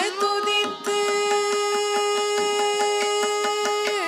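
Carnatic vocal music: after a brief ornamented phrase, the female singer and the violin settle about a second in on one long steady held note. Mridangam and ghatam strokes keep a regular rhythm beneath it.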